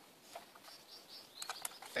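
Faint clicks and knocks as a Norinco M14 rifle is swung and handled, with a few faint high bird chirps about half a second to a second in.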